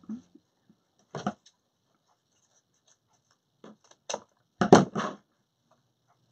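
Scissors snipping ribbon ends into dovetails, a few short separate cuts: one about a second in, then a quicker cluster around four to five seconds.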